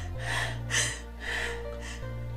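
A woman crying, with four short sobbing gasps about half a second apart, over background music of low held notes.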